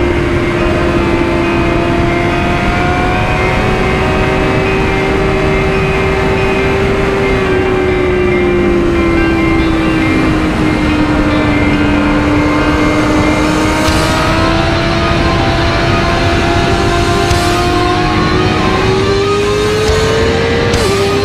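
2016 BMW S1000RR's inline-four engine running at a steady cruise, its pitch sinking slightly midway and climbing again near the end, over a constant rush of wind and road noise.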